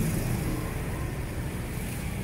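Steady background rumble like road traffic, with a low engine-like hum fading out right at the start.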